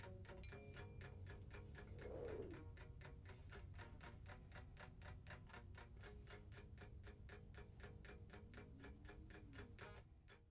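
Faint, rapid, even ticking at about five ticks a second, over a low steady hum.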